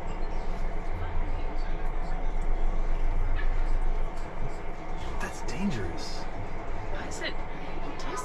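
Steady mechanical hum inside a stationary train sleeper compartment, with a short murmured voice about two-thirds of the way through.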